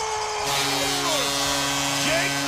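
Arena goal horn sounding steadily over a cheering crowd right after a home goal in an ice hockey game. A second, lower horn tone comes in about half a second in, and the crowd noise swells with it.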